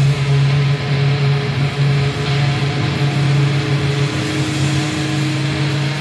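Stoner-doom metal: heavily distorted guitar and bass holding a low, droning riff that pulses in a steady rhythm.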